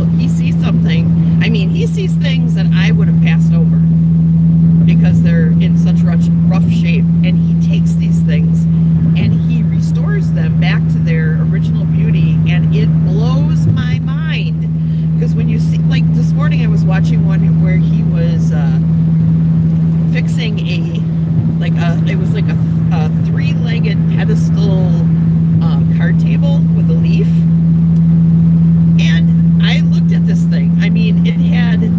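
Inside a moving car: a steady low hum of engine and road noise in the cabin, under a woman talking.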